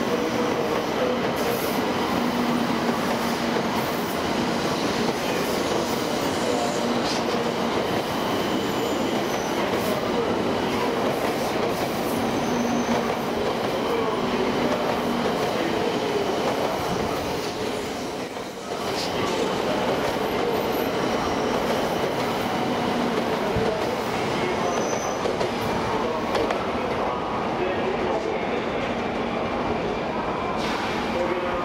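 700 series Shinkansen train departing, its cars rolling past with a steady running noise and a faint hum. The sound dips briefly a little past halfway.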